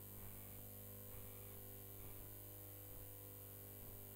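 Near silence: a steady low electrical hum with a few faint, indistinct ticks.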